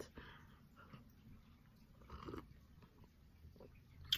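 Near silence with a few faint sips and swallows of hot tea from a mug.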